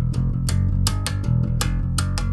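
Electric bass guitar playing a simple heavy rock/metal line through an amp: open low E notes ringing, with fretted notes on the E string between them, about four to five plucked notes a second.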